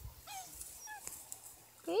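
Bluetick beagle puppies giving two short, high whimpers while feeding.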